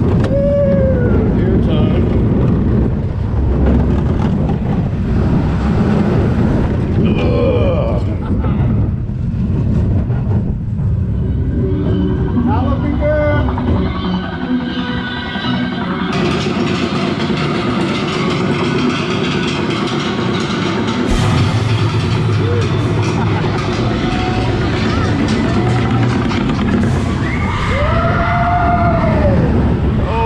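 Backlot Stunt Coaster train running along its track, with a steady rumble, wind on the microphone and riders yelling now and then. About halfway in, the sound turns brighter and more hissing.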